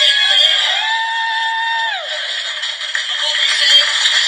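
A man singing into a microphone, holding one long note that falls away about two seconds in, with a thin, tinny sound and no low end, as from a phone recording.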